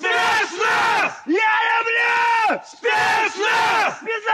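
Men of a special forces unit shouting their military chant in call and response: a series of loud, drawn-out shouted words, the longest lasting over a second, with short breaks between them.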